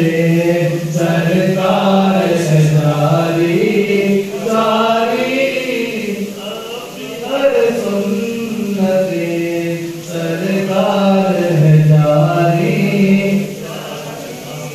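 A man reciting an Urdu naat unaccompanied, singing long, drawn-out melodic lines with slow bends in pitch between held notes.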